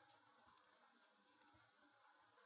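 Near silence: faint room tone with two small clicks, about half a second in and again near the end.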